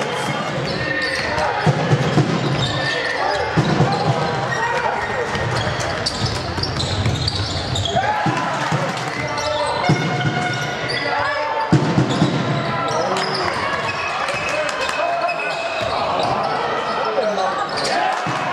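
Basketball game in a sports hall: the ball bouncing on the court floor, with a few sharp thumps, over a steady mix of players' and spectators' voices.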